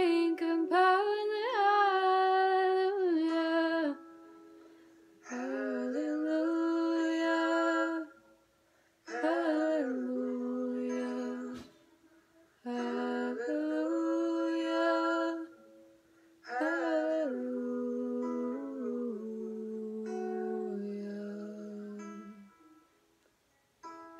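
A woman singing a slow melody in five phrases with short pauses between them, holding long notes. There is a brief click about halfway through.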